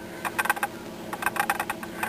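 A run of quick, irregular clicks over a faint steady hum. This is the background clicking that the uploader notes runs through the recording without knowing its cause.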